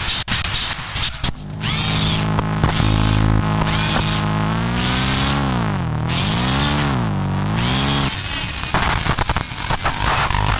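Pre-recorded tape played back through the Tapetron-2 portable cassette player module. Choppy, stuttering bursts give way about a second and a half in to a sustained pitched drone that later dips in pitch and comes back up twice as the tape motor speed is varied, then cuts off about eight seconds in, back to stuttering bursts.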